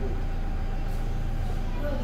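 A steady low rumble with no distinct events, and faint voices in the background.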